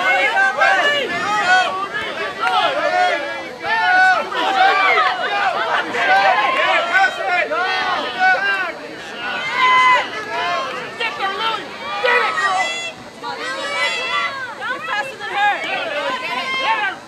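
Many voices shouting and cheering over one another, with high calls overlapping, rising and dipping in loudness: spectators and players yelling at a soccer match.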